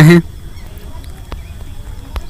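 A man's voice trails off on a drawn-out syllable at the very start, then faint steady room noise with a few soft ticks.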